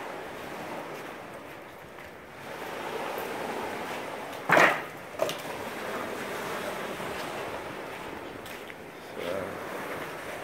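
Small waves washing onto a sandy beach in a steady hiss of surf, with wind on the microphone. A brief loud thump about halfway through.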